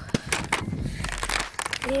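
Camera being handled close to the microphone: a run of rubbing, scraping and knocking noises. A boy's voice starts near the end.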